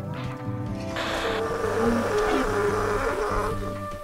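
Background music with a buzzing, hissy noise laid over it from about a second in until shortly before the end.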